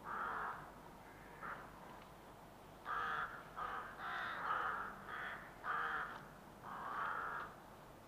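Crows cawing in the open countryside, about eight separate caws spaced irregularly.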